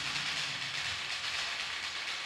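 Altar bells rung continuously at the elevation of the chalice, making a steady, dense, hiss-like jingle.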